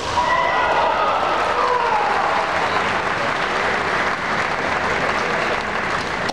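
A gymnasium crowd applauding, starting suddenly and holding steady: applause for a scoring strike in a kendo bout.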